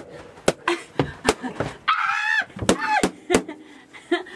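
Party balloons burst one after another with a knife: a quick, uneven series of sharp pops, about seven in four seconds.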